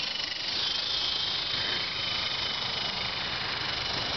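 Electric coaxial RC helicopter with twin brushless motors in flight: a steady high-pitched motor whine over an even rushing hiss, the pitch dipping slightly near the start.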